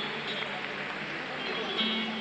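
Music with indistinct voices behind it, at a steady level.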